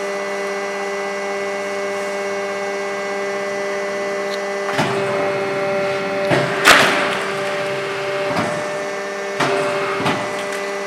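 A 100-ton hydraulic die-cutting press running, its hydraulic pump motor giving a steady hum. From about halfway through come a few short clunks as the press works, the loudest a brief hissing clunk about two-thirds of the way in.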